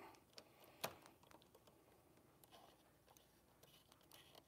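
Near silence, with faint taps and clicks from a phone being handled and tapped, one sharper click about a second in.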